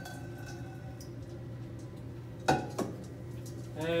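Two sharp glass clinks, about a third of a second apart, from a glass reagent bottle and round-bottom flask being handled, over the steady hum of a fume hood's fan.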